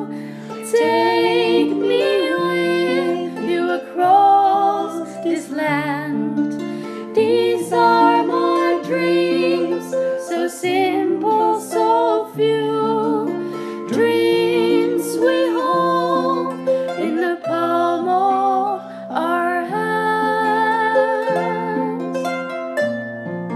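Harp playing slow plucked notes and chords, with women's voices singing a melody over it.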